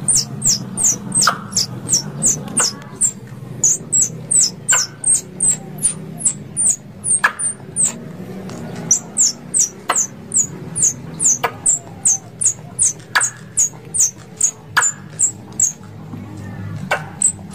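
Plantain squirrel (tupai kelapa) calling: a long series of short, high chirps, each falling slightly in pitch, about three a second, with a sharp click every second or two.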